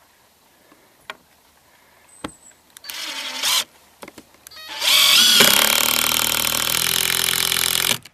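Hitachi cordless impact driver sinking a Cortex screw into a composite deck board: a short run about three seconds in, then a longer steady run from about five seconds that cuts off suddenly at the end.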